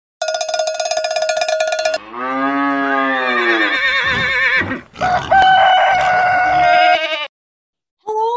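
A cowbell clanking rapidly for about two seconds. Then cattle mooing: a low moo that rises and falls in pitch, and after a short gap a higher, wavering call that is held for about two seconds.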